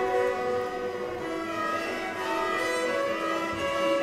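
Two Hardanger fiddles playing a duet of Norwegian folk music, bowed notes with a low note held through the second half.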